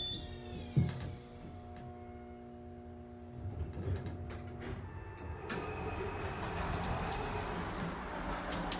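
An old winding-drum elevator arriving at the lobby. The drive's falling whine dies away at the start, a sharp thud about a second in marks the car stopping, and a steady hum follows. In the second half the doors slide open with a noisy scraping rush and clicks.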